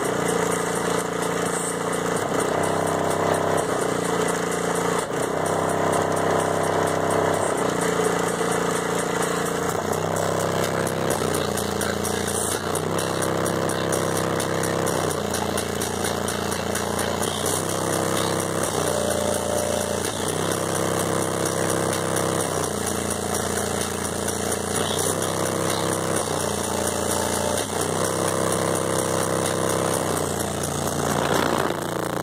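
Bass-heavy music played loud through a car audio system of six Sundown Audio SA-8 v2 8-inch subwoofers driven by a Sundown SAZ-5000D amplifier. The bass line steps between held notes about once a second in a repeating pattern.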